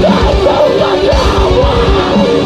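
Symphonic deathcore band playing live through a festival PA: rapid kick drums, heavy distorted guitars and harsh screamed vocals.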